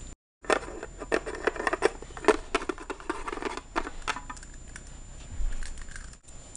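Quick irregular clicks and taps of small hard plastic toy figurines being picked up and handled, knocking against each other and the wooden board, busy for about four seconds and then thinning out.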